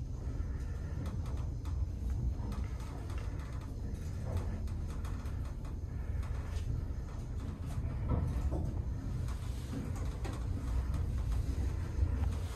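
Lift car travelling between floors: a steady low rumble with a few faint clicks and knocks.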